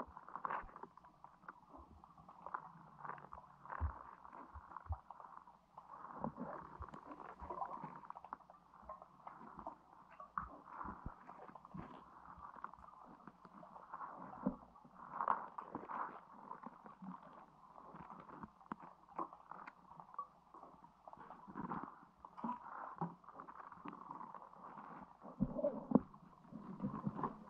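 Muffled underwater sound recorded by a GoPro in its waterproof housing: a dull gurgling wash of water, broken by frequent irregular knocks and clicks.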